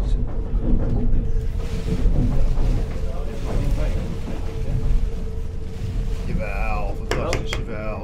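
Wind-driven millstones of a traditional windmill grinding rye, a steady low rumble with a constant hum running through it. A man's voice comes in over it near the end.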